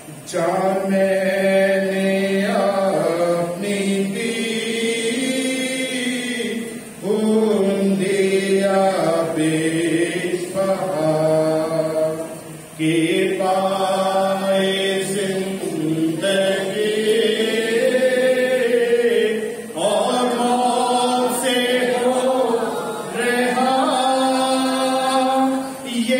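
A man singing the verse of an Urdu hymn in long, held phrases, with brief breaks for breath between them.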